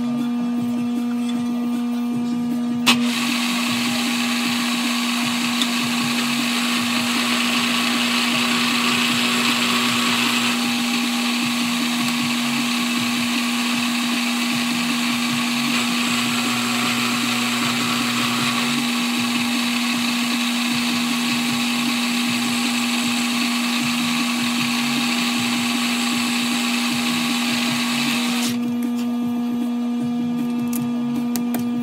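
Bridgeport vertical milling machine spindle running steadily while an end mill cuts an aluminium part. After a click about three seconds in, a continuous cutting noise runs until shortly before the end and then stops, leaving the spindle hum.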